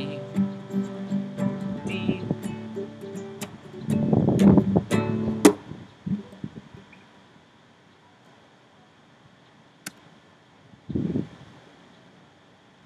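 Nylon-string classical guitar strummed chord by chord through a simple D–G–A progression, with a loud flurry of strums about four seconds in, then ringing out and fading away. Near the end, a short low rumble as the camera is handled.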